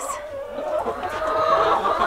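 Chickens (laying hens) clucking, with one drawn-out call in the second half.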